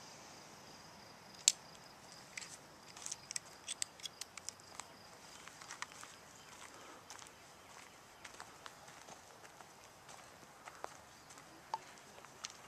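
Faint, irregular crunches and clicks of footsteps on playground wood chips, over a quiet outdoor background. One sharper click about a second and a half in, and a run of clicks a few seconds in.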